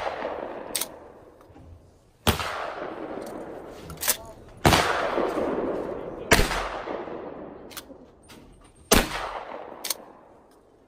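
Four shotgun shots fired at clay targets, each a sharp report followed by a long echo that fades over a couple of seconds. The second and third shots come close together, and a few lighter clicks fall between the shots.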